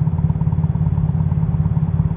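Narrowboat diesel engine idling with a fast, even chugging from its exhaust. The exhaust is said to be cracked or not right, which makes it a lot louder than it should be.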